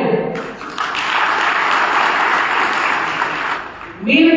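Audience applauding in a pause in a speech, starting just after the speech breaks off and dying away shortly before it resumes.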